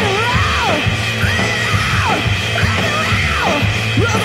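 Live electronic rock music with a steady heavy beat, over which a singer yells three long cries into a microphone, each sliding down in pitch.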